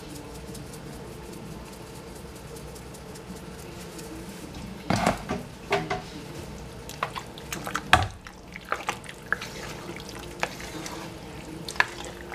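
Kitchenware clatter: scattered short knocks and scrapes over a steady low hum, with the loudest knocks about five seconds in and again around eight seconds.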